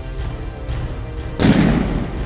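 A single rifle shot about one and a half seconds in, loud and sudden, dying away over about half a second, over background music.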